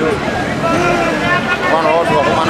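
A man speaking in the foreground, with street traffic and background chatter behind him.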